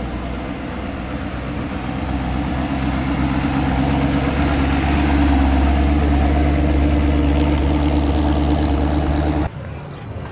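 A hot rod sedan's engine running steadily at low speed as the car rolls slowly up and close past, growing louder as it nears; the sound cuts off abruptly near the end.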